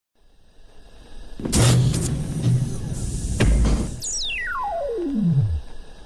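Electronic intro sting on synthesizer: swelling whooshes over a low hum, with a couple of sharp hits. It ends in one long falling sweep that drops from very high to very low pitch.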